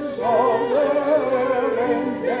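A hymn being sung with instrumental accompaniment: voices with a clear vibrato over held low notes, the melody moving from note to note.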